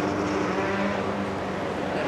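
Competition car's engine running at steady revs as it drives away up a winding road, fading.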